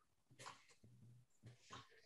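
Near silence with a few faint, short sounds.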